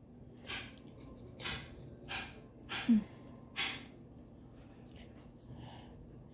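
A woman's short, breathy puffs of breath, five of them about two-thirds of a second apart, one with a brief voiced catch about three seconds in: random breathing between laughs.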